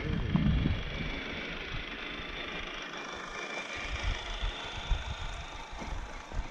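Radio-controlled scale truck's electric motor and gears whining steadily as it drives over dirt, with gusts of wind rumbling on the microphone.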